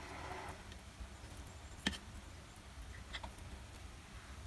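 Quiet utensil handling: one sharp click a little under two seconds in and a few fainter ticks later, as chopsticks and a fork work noodles out of a bowl, over a low steady hum.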